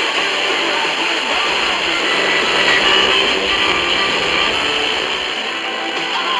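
A weak, distant FM broadcast playing music through a small portable radio's speaker, half buried in heavy, steady static hiss.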